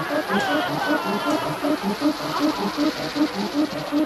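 Film sound effects of swarming insects buzzing and chittering over an even pulsing beat of about three to four a second, with a man's wavering cries early on.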